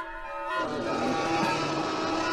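A lion's roar starting about half a second in and running on past the end, loud and rough, over background music.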